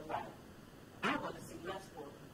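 Speech: two short stretches of a woman's voice, off the main flow of words, the second about a second in.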